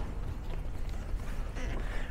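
Low, steady background noise with a faint rumble and no distinct sound event: room tone with some handling noise from a moving hand-held camera.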